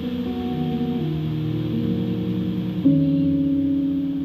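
Music of held, sustained chords with no voice, the chord changing about a second in and again just before three seconds, where it gets louder.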